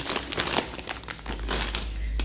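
Plastic snack packaging and thin plastic grocery bags crinkling and rustling in irregular bursts as a hand handles them. A low rumble joins from about halfway through.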